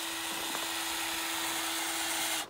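A steady motor hum holding one even tone over a hiss, unchanging throughout.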